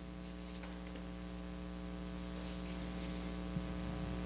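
Steady electrical mains hum with its evenly spaced overtones, picked up through the sound system, with one faint click shortly before the end.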